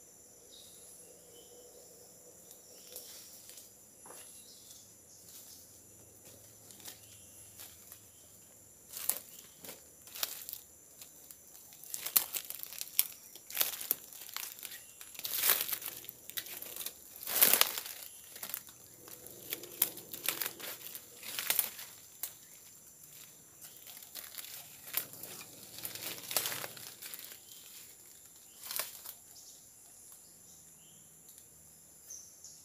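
Irregular crackling and rustling close to the microphone, sparse at first and then dense and loudest through the middle, over a steady high-pitched insect drone in the forest.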